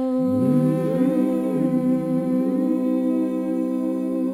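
Voices humming a sustained chord in close harmony, with lower parts sliding up into it about half a second in: the song's closing chord.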